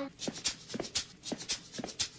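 Footsteps walking across a floor, about two steps a second, with quick light ticks and shuffles between them.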